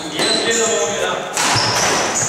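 Badminton doubles rally: rackets striking the shuttlecock twice, about a second apart, with sneakers squeaking on the wooden gym floor.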